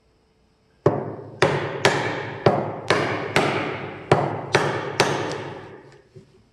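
Narex mortise chisel driven into a wood block with a steel-headed hammer: about nine sharp blows, roughly two a second, beginning about a second in, each ringing out briefly afterwards.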